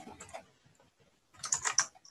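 Computer keyboard keystrokes: a few faint clicks just after the start, then a quick run of four or five sharper key clicks about one and a half seconds in.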